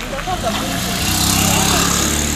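Motorcycle engine running close by, a steady hum that grows louder through the first second and a half, then eases slightly.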